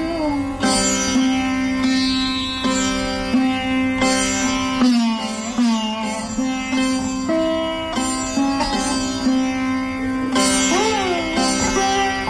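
Hindustani sitar playing raga Bibhas: single notes plucked about once or twice a second, several bent in smooth pitch glides, ringing over a steady drone.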